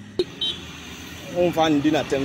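A road vehicle passing, heard as a steady even noise, with a sharp click just after the start; a woman's voice comes in loudly about a second and a half in.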